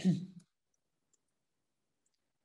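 A man's single short cough right at the start, then near silence with a few very faint keyboard clicks as a word is typed.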